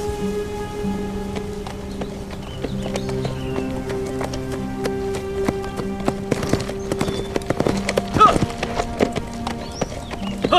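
Horse hooves clip-clopping under a musical score that holds long sustained notes. About eight seconds in, a horse whinnies briefly.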